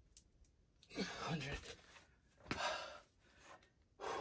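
A man's heavy exhales from push-up exertion: a voiced sigh with a falling pitch about a second in, then a second, sharper breath out about a second and a half later.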